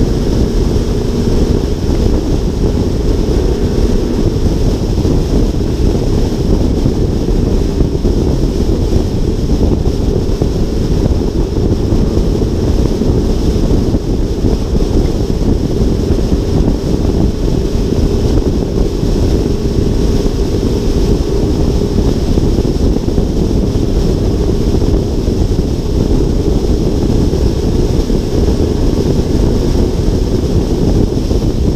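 Steady wind rush on a car's hood-mounted action camera at freeway speed: a low, even roar that does not change.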